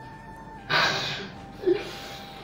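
A man weeping: a sharp, gasping sob drawn in about two-thirds of a second in, then a short voiced sob near the end, over a steady held note of background music.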